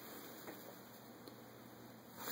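Near silence: faint room tone, with a slight tick about half a second in.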